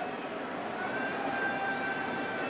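Steady ballpark crowd murmur in the stands, with a faint held tone rising out of it about a second in.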